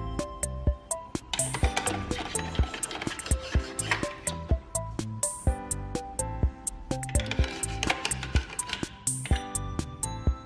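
Background music with a steady beat: pitched notes over regular percussion strikes.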